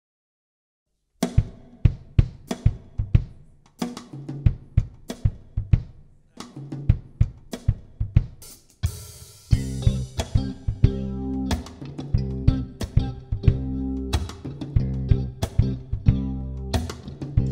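Live band: a drum kit starts alone about a second in, playing a steady groove on kick, snare and hi-hat. After a cymbal crash a little past halfway, electric bass and electric guitar come in under the beat.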